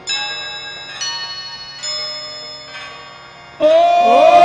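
Slow instrumental passage in devotional bhajan music: four single ringing instrument notes about a second apart, each fading away. Near the end a man's singing voice comes in loud on a held note.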